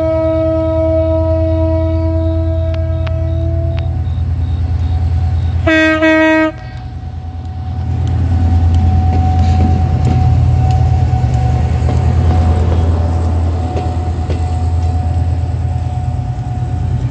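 EMD GT22 diesel-electric locomotive sounding a long, steady horn that stops about four seconds in, then a short, louder toot about two seconds later, over the low drone of its diesel engine. From about eight seconds the engine grows louder as the locomotive passes close, and the coaches then roll by.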